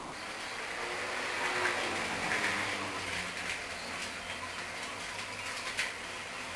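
Scissors cutting through a paper pattern along a drawn line: a soft, steady rasp of the blades through the paper, with a few sharper snips in the second half.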